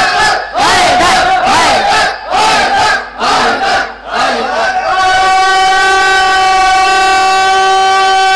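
Loud amplified voices calling out in swooping, chant-like phrases with short breaks between them. From about five seconds in, one high voice holds a single long, steady note for about four seconds.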